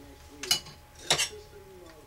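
Two light metallic clinks, about half a second and a second in, the first ringing briefly: thin aluminum hard-drive platters and metal parts being handled on a wooden desk.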